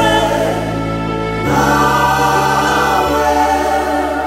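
Live gospel music: a woman singing lead over keyboards with backing vocals, a new sustained chord coming in about a second and a half in.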